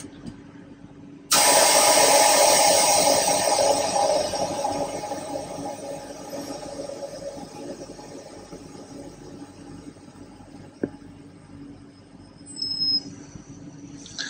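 Compressed air rushing out of a train's brake pipe as the driver's brake valve is thrown into emergency braking for a brake test: a sudden loud hiss about a second in, fading away over several seconds as the pressure falls to zero. A single click follows later.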